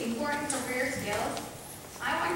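A woman speaking, then pausing near the end.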